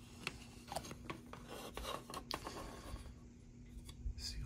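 Faint rubbing and small scattered clicks of a plastic model car body being handled and turned over in the fingers.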